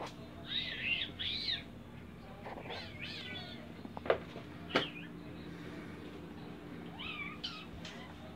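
A baby's high-pitched squeals, in three short bouts of wavering, rising and falling cries, with two sharp clicks in the middle.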